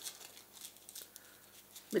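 Faint rustling and crinkling of florist's crepe paper being twisted and pinched between the fingers.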